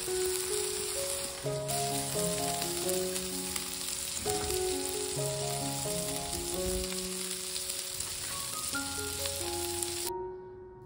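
Beef burger patties and bacon sizzling steadily on a hot griddle plate, with a gentle piano-style melody playing over it.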